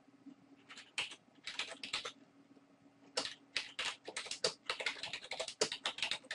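Typing on a computer keyboard: a short run of keystrokes, a pause of about a second, then a faster, denser run of keys.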